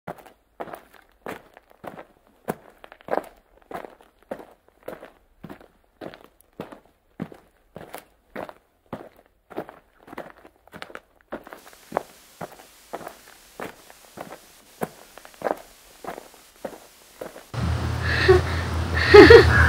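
Footsteps at a steady pace, about two to three a second, some steps landing harder than others. A faint hiss comes in about two-thirds of the way through, and a louder sound with a low hum starts right at the end.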